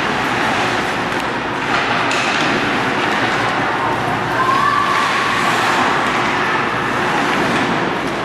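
Steady ice-rink game noise: a continuous rushing wash of arena sound from live ice hockey play, with a couple of sharp knocks about two seconds in.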